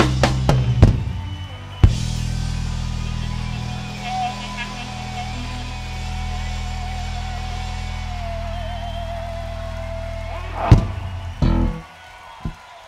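Live rock band without its guitar part, ending a song. A few sharp drum-and-bass hits come first, then a long held low chord rings for about nine seconds under a sustained high note that wavers. A final loud hit comes near the end, and the sound drops away.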